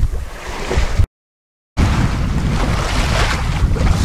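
Wind buffeting the microphone as a loud low rumble over the wash of choppy open-sea waves, cut to dead silence for well under a second about a second in, then resuming.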